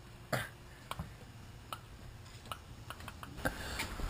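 A few scattered light clicks and knocks, the sharpest about a third of a second in, from footsteps and handling; a soft outdoor background rises near the end.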